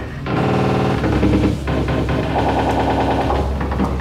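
Live metalcore band playing loud and dense: distorted guitars and bass over fast, rapidly repeated drum or picking strokes.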